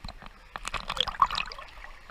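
Sea water splashing and gurgling around a camera held at the waterline, with a burst of splashes and bubbling from about half a second to a second and a half in.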